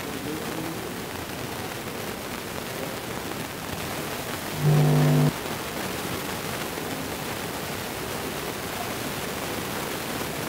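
Steady background noise, with one short, flat, buzzing tone lasting under a second about halfway through, starting and stopping abruptly; it is the loudest sound.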